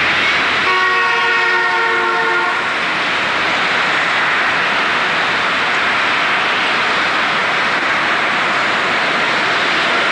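Steady roar of street traffic, with a vehicle horn sounding a chord of several tones for about two seconds, starting just under a second in.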